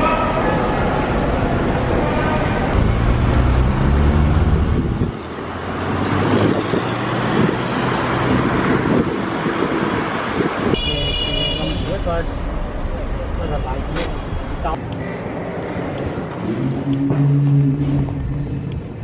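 Road traffic and car noise in slow, dense city traffic, with voices mixed in.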